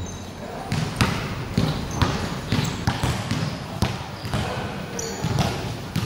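Basketball being dribbled on a hard court, bouncing about twice a second, with a few short high sneaker squeaks between the bounces.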